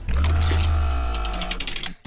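Short music transition stinger: a deep bass hit with a sustained chord above it that fades away over about two seconds, then cuts off.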